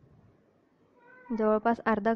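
Water poured faintly from a glass into an empty steel kadhai, then a woman's voice starts loud and clear about a second and a half in.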